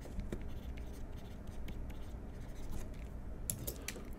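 Faint scratching and light tapping of a pen writing by hand on a writing surface, with a few sharper clicks near the end, over a steady low hum.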